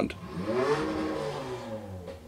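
A man's long drawn-out groan of disappointment, its pitch rising and then falling.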